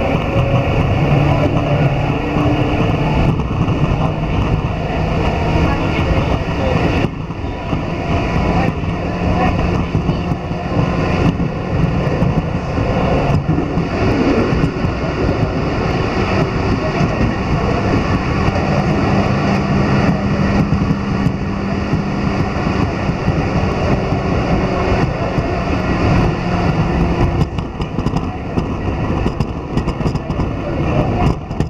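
Tokyu Oimachi Line electric commuter train running at speed, heard from inside the passenger car: steady rumble of wheels on the rails with a low motor hum. About halfway through, another train passes close alongside.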